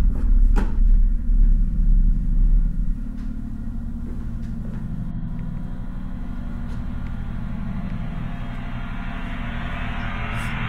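Low, steady rumbling drone of a horror film's sound design, heavy for about the first three seconds and then settling into a quieter, fluttering hum. A few sharp clicks near the start.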